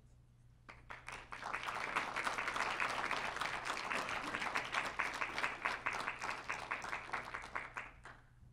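An audience clapping, starting about a second in and quickly filling out into steady applause that stops near the end.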